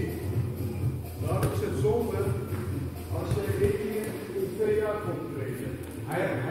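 Indistinct voices talking in a large, echoing hall.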